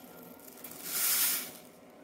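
Dry active yeast granules sliding down a paper funnel into a plastic two-liter bottle: a brief soft hiss about half a second in, lasting about a second.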